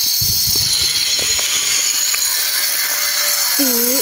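A steady high-pitched hiss at an even level throughout, with a few low bumps in the first second and a half and a short spoken word near the end.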